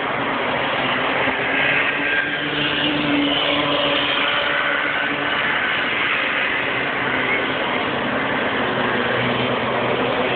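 Several bambino racing karts' small two-stroke engines running around the circuit together: a steady, continuous engine buzz.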